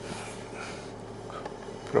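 Steady low hum of the Land Rover Discovery's 3.0-litre SDV6 diesel idling, heard from inside the cabin.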